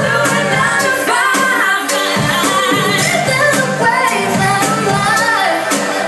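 Loud pop song with a woman singing over a steady beat, played through the venue's sound system.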